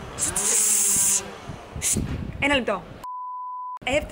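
Street traffic noise with a loud hiss in the first second and faint voices, then near the end a single steady electronic beep lasting under a second, with all other sound cut out beneath it.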